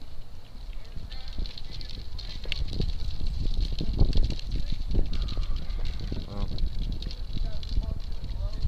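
Faint, muffled voices of people talking some way off, over low rumbling and knocking noise on a body-worn camera's microphone. A steady high whine runs underneath.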